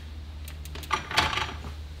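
Light metallic clinks and knocks, a few in quick succession, as a mountain bike is lifted off a Kuat Piston Pro X hitch bike rack after its one-touch release.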